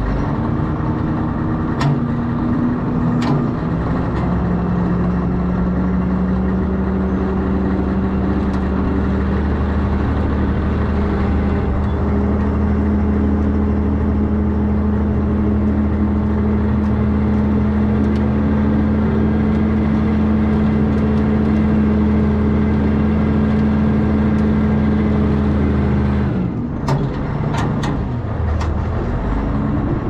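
Caterpillar 988 wheel loader's diesel engine running steadily under load as the loader moves. Its note drops off suddenly about 26 seconds in, followed by a few sharp clicks.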